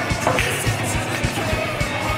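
Background music with a steady beat, over which a pool break shot cracks about a third of a second in: the cue ball smashing into the racked balls and scattering them across the table.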